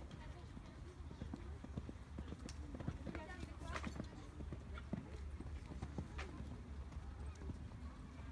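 Hoofbeats of a horse cantering on arena sand, a run of irregular soft thuds, with people talking in the background.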